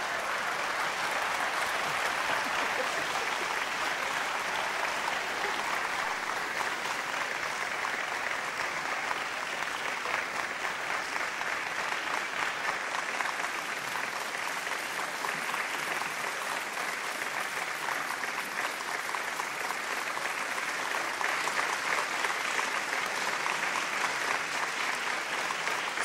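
Theatre audience applauding at the final curtain of a play: dense, steady clapping that holds at an even level throughout.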